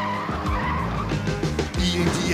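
The song's backing music plays on between sung lines. Over about the first second a wavering screech, a cartoon tire-squeal effect for the pickup truck, lies on top of it.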